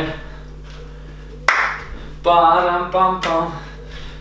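A single sharp hand clap about a second and a half in, followed by about a second of wordless voiced sound, under a steady low hum.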